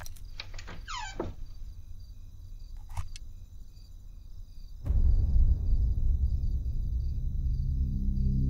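Faint, evenly repeating insect chirping like crickets, with a few clicks and a falling sweep in the first second or so. About five seconds in, low, droning background music swells in suddenly and becomes the loudest sound.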